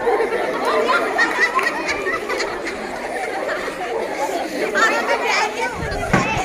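Many girls' voices chattering and talking over one another.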